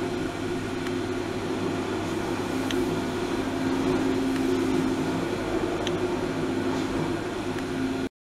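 Sonic electric toothbrush buzzing steadily against a metal plate, a constant mid-low hum with a few faint ticks.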